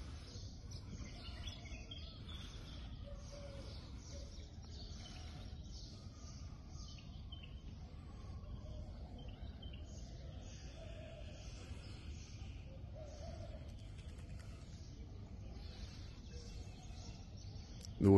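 Faint, steady outdoor background noise with occasional faint bird chirps.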